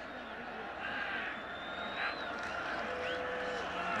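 Steady stadium crowd noise from a college football broadcast during a play, with faint voices mixed in.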